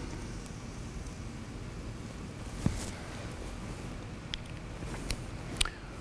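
Faint strokes and taps of a marker drawing a curve on a whiteboard, over a steady low room hum.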